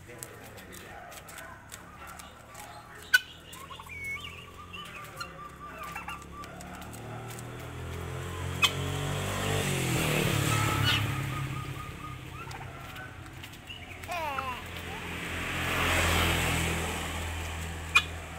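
Domestic turkey gobbling, with one loud burst near the middle and another near the end, over softer calls from the pen. A couple of sharp clicks come in the first half.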